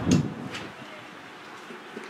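A short low thud right at the start, then a single sharp click about half a second in as the bowled cricket ball reaches the batsman's end.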